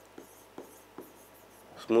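Faint strokes and light ticks of handwriting on the glass screen of an interactive touchscreen whiteboard, a few soft taps spread over about two seconds.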